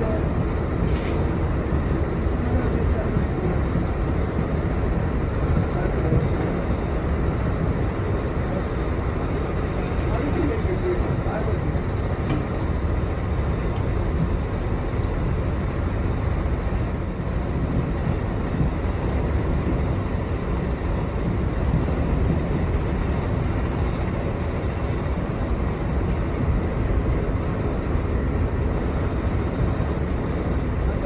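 Steady rumble of a passenger train running at speed, the wheels on the rails heard from inside the coach.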